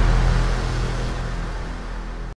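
Outro music with heavy bass, fading out.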